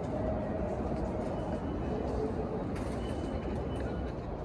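Ambience of a railway station concourse at the ticket gates: a steady low rumble filling the hall, with a faint thin tone or two in the second half.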